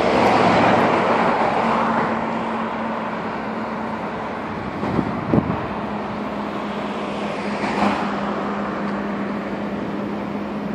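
Highway traffic: a car passes close by at the start and another swells by near the end, over a steady low engine hum. Two short thumps come about halfway through.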